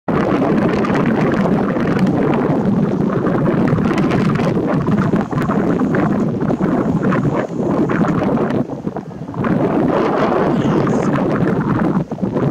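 Loud wind buffeting the camera's microphone, rumbling and fluctuating, with a brief lull about nine seconds in.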